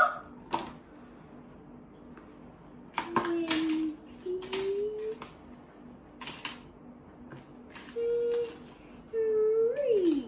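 Bundles of thin wooden counting sticks clicking and clattering as they are picked up and set down in a plastic tray, in scattered taps and short rattles. A child hums a few short, level notes between the clicks.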